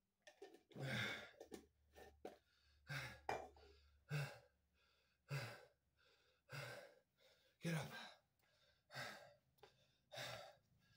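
A man's heavy, hard breathing from exhaustion during burpees: a sighing exhale about every second, in a steady rhythm.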